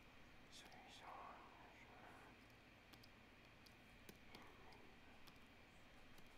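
Near silence with faint, scattered computer mouse clicks as colour is filled in, and a faint breathy murmur about a second in and again near four and a half seconds.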